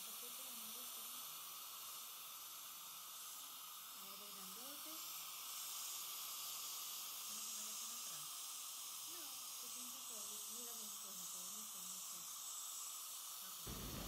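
Faint steady hiss with a faint, indistinct voice wavering underneath it.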